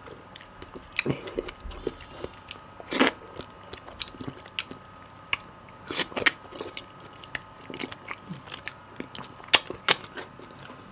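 Close-miked eating of slimy ogbono soup and pounded yam by hand: mouth smacks and chewing, a steady patter of small wet clicks with louder bursts about one, three and six seconds in and again near the end.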